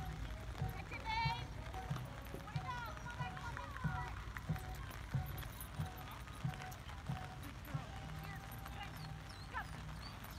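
Birds chirping and trilling in short warbling phrases, clearest about a second in and again around three to four seconds, over a steady low rumble with scattered soft thumps.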